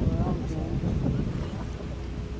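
Wind buffeting the microphone, a steady low rumble, with a person's voice talking in the first second or so.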